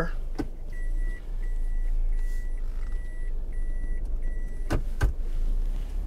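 Electronic beeper sounding about six even beeps of one high tone, roughly one and a half a second, over a steady low rumble; two sharp clicks follow near the end.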